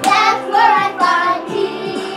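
Children singing a song over backing music, with a run of bending sung notes in the first second and a half.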